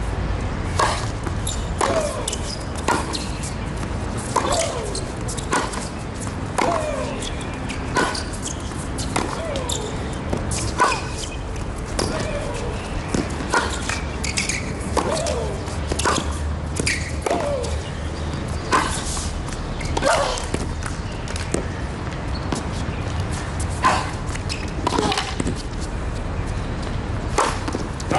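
A long tennis rally on a hard court: racket strikes and ball bounces, each a sharp pop, following one another about once a second. Some shots come with a player's short grunt.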